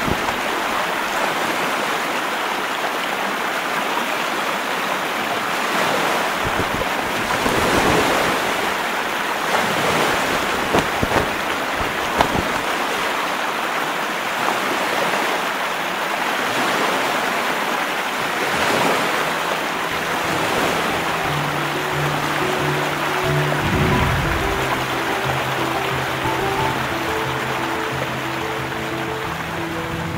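Steady rushing wind and water noise on a river cruise ship under way, swelling now and then in gusts. Soft music fades in about two-thirds of the way through.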